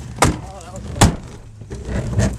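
Two sharp knocks about a second apart, heard inside a car's cabin over a steady low engine hum.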